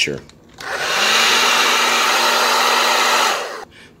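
Handheld hair dryer switched on at its high setting: a steady rush of air over a low, even motor hum, starting about half a second in and cutting off near the end.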